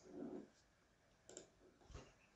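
Near silence with two faint computer mouse clicks, one a little past the middle and one near the end.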